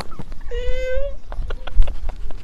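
A single high-pitched vocal call, held for about half a second and rising slightly, followed by a few light clicks. Wind rumbles on the microphone and is loudest near the end.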